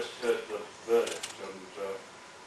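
Indistinct man's voice speaking off the microphone in short bursts, with a brief rattle of small clicks about a second in.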